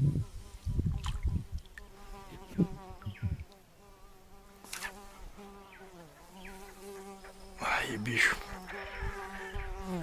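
A flying insect buzzing close by in a steady drone whose pitch wavers a little, with a few soft knocks in the first few seconds.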